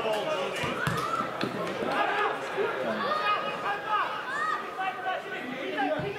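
Several voices of players and spectators shouting and calling across a football pitch, overlapping one another, with a couple of sharp knocks in the first second and a half.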